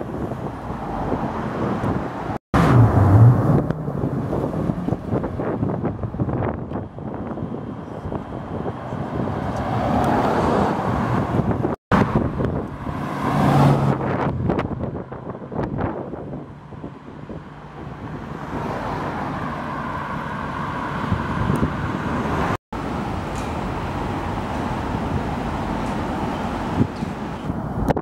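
Cars driving past on a road, in several short clips joined by abrupt cuts. The clips include a Maserati 4200GT's V8 as it turns and a TVR roadster's V8 pulling away, with engine notes rising as they accelerate over traffic noise.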